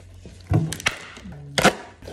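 Cardboard doll packaging being bent and torn as the doll is pulled free of its backing card: a few sharp cracks and snaps, the loudest about a second and a half in, with rustling between them.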